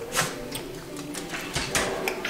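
A few light knocks and clicks: one about a fifth of a second in, then a quick run of three near the end.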